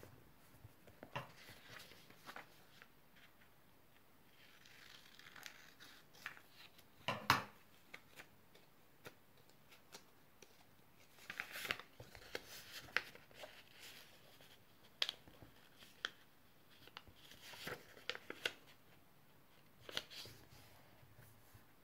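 A square of origami paper being folded and creased by hand: scattered crinkles and rustles, with the sharpest crackle about seven seconds in.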